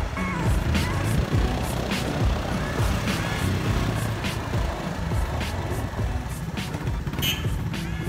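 Motorcycle running on the move, with a low, fluttering rumble from wind on the microphone, under music with a steady beat of about two ticks a second.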